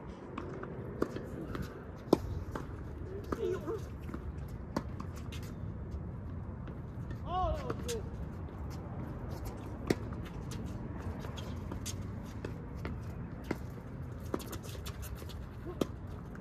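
Tennis balls being struck by rackets and bouncing on the court: scattered sharp knocks, the loudest about two seconds in. Under them run steady outdoor background noise and faint distant voices.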